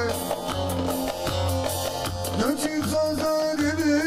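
Live Turkish folk dance tune (oyun havası) played on bağlama, keyboard and percussion, with a wavering, ornamented melody over a steady low beat about twice a second.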